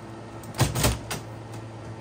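The metal main door of a WMS Blade slot machine cabinet swung shut and latched: a quick run of clunks about half a second in, the two loudest close together, over a steady low hum.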